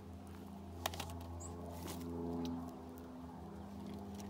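A steady low mechanical hum, with a few light clicks of hand pruning tools being handled as the loppers are picked up.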